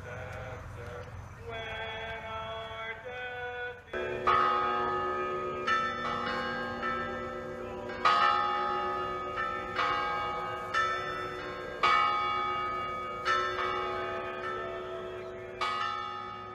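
A few seconds of chanted singing end, and church bells take over about four seconds in. Several bells are struck in a repeating pattern roughly every one to two seconds, and their long ringing overlaps.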